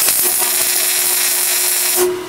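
Electric arc welding a tack weld on steel tube: a steady hiss from the arc that starts suddenly and cuts off at the end of the weld, about two seconds later.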